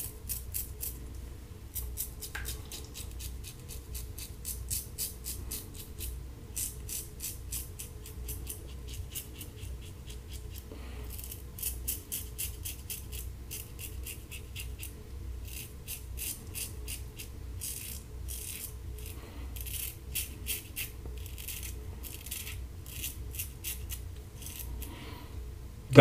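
Standard aluminum double-edge safety razor with a Kai blade scraping through stubble on the jaw and neck: quick runs of short, crisp rasping strokes with brief pauses between them. The blade is on its third shave and, to the shaver, near the end of its life.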